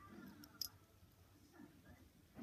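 Near silence, with one faint, sharp click a little over half a second in as the screw-off cap of a fidget spinner is turned by hand.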